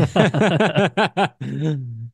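A man laughing: a quick run of short pitched 'ha' pulses, about six a second, ending in one longer drawn-out sound near the end.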